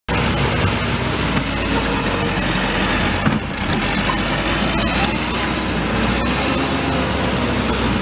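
Backhoe loader's diesel engine running steadily, with one short knock about three seconds in. The sound cuts off suddenly just after the end.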